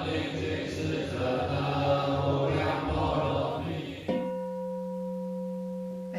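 A group of monastics chanting together in unison. About four seconds in, a large bowl-shaped Chinese temple gong (dà qìng) is struck once and rings on with a steady, layered hum.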